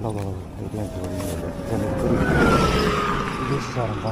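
A road vehicle passes close by. Its noise swells to a peak a little past halfway, while a whining tone falls steadily in pitch as it goes past.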